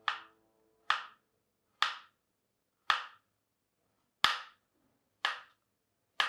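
Kitchen knife chopping through a carrot onto a wooden cutting board: six sharp knocks, about one a second.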